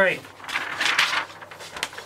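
Printed poster-board cards being shuffled and handled: a papery rustle about half a second in, lasting under a second, then a light tap near the end.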